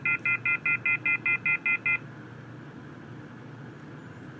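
Rapid electronic phone beeping from a small speaker driven by a sound-module circuit board, about five beeps a second, marking the recorded call cutting off. The beeping stops about halfway, leaving a faint hiss.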